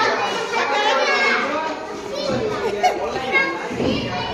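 A group of children chattering and calling out at once, with many high voices overlapping.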